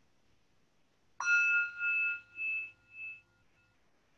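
A meditation bell struck once, ringing with a slow pulsing wobble that fades over about two seconds and then cuts off suddenly.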